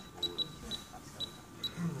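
About five short, high-pitched electronic beeps at uneven intervals from a portable TENS unit's buttons as its settings are pressed through, with faint voices underneath.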